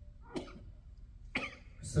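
A person coughing twice, about a second apart, in a quiet hall.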